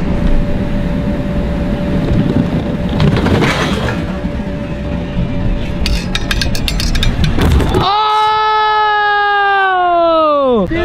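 Heavy wind rumble on the microphone as the scooter rider rolls in and launches off the mega ramp, with a thin steady tone early on and a run of sharp clicks later. About eight seconds in the rumble cuts off and a long held pitched sound takes over, then sinks steeply in pitch and dies away.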